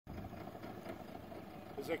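Outboard motor idling with a quiet, steady hum.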